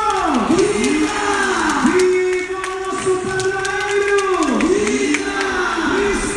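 Religious hymn sung over a loudspeaker system, the melody in long held notes that dip and rise again, above the noise of a large crowd.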